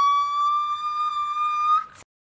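A comic 'whaaat?' sound effect: a high, cartoonish voice holding one long note that creeps slightly higher and cuts off suddenly near the end.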